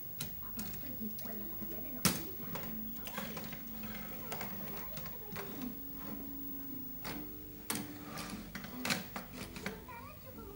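Plastic toy vehicles being handled and set down on a wooden cabinet top, making scattered clacks and knocks; the sharpest knock comes about two seconds in, with more near the end.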